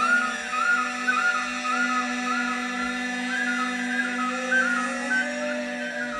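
Live symphony orchestra and band holding a long low note, while a high whistle-like line above it repeats a short rising-and-falling figure about twice a second.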